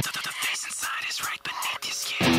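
Whispered vocals over thin, scratchy clicks in a stripped-down break of a rock remix track. The bass and guitar drop out here.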